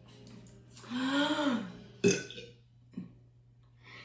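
A woman burps once, long and voiced, after a drink, starting about a second in; its pitch rises and then falls. A short sharp click follows about a second later.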